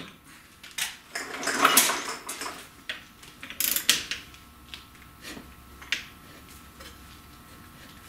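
Torque wrench and socket working the rear axle hub nut as it is tightened toward 150 lb-ft: scattered metallic clicks and clunks, the loudest and longest about two seconds in, with a low steady hum beneath.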